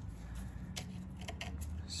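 A few light metallic clicks as the rusty serrated set-screw wheel on a 1957 Lister D's carburettor is turned by hand, over a low steady hum.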